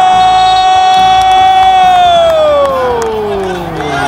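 A Brazilian TV football commentator's long drawn-out "goool" cry: one loud held note that slides down in pitch over the last two seconds as he runs out of breath.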